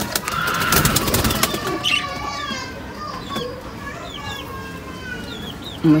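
Birds: a burst of rustling wing-flapping over the first second and a half, then a run of short, high chirps and whistles.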